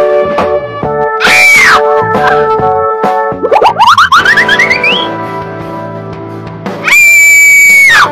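Cartoon sound effects over bouncy background music: a falling whistle about a second in, a quick run of rising whistle glides around the middle, and a loud held high squeal near the end that cuts off suddenly.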